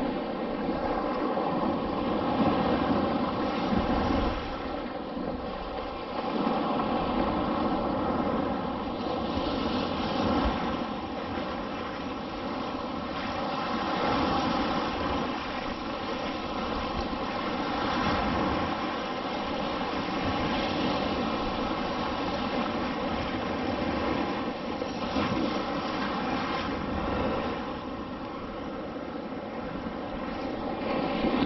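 Surf washing and waves breaking in the shallows, swelling and easing every few seconds, over a steady droning hum.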